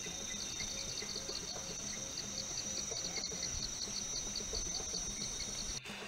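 Tropical forest insects: a steady high-pitched drone with a pulsing chirp over it, about four pulses a second. It cuts off suddenly just before the end.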